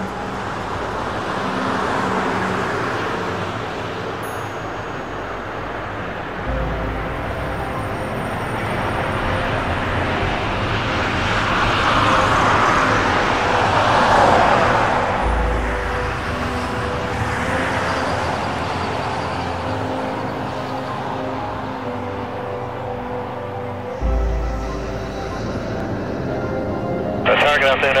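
Jet engines of a four-engine Airbus A340 at takeoff thrust on its takeoff roll: a broad rushing noise that swells to its loudest around the middle and then eases off as the aircraft moves away down the runway.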